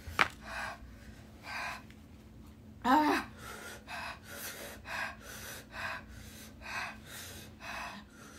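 A woman gasping hard through an open mouth from the chilli burn of the extremely hot Paqui One Chip Challenge chip. There is a short loud cry about three seconds in, after which the gasps come quickly, about two a second. A sharp click comes right at the start.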